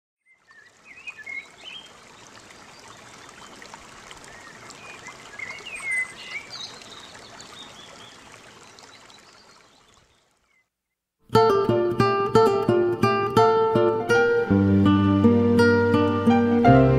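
Faint outdoor ambience with a few birds chirping, then a brief silence. About eleven seconds in, an acoustic guitar begins a chamamé introduction of plucked notes, with deeper notes joining a few seconds later.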